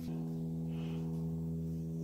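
A steady hum of several held tones, unchanging in level and pitch.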